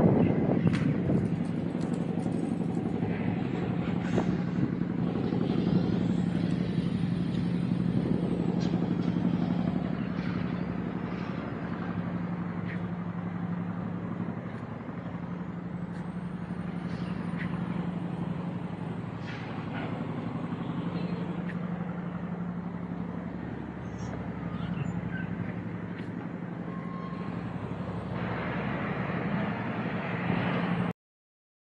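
A steady low engine drone over the general noise of a city outdoors.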